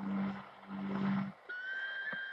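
Instrumental music received on a shortwave radio, with hiss. A low held note breaks off about a second in, and after a short gap a steady high whistling note begins.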